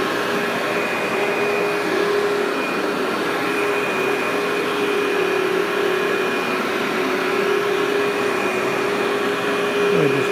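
Workhorse upright vacuum running steadily as it is pushed over low-level loop commercial carpet: an even motor hum with a thin high whine over it.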